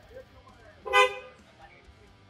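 A single short car horn toot about a second in.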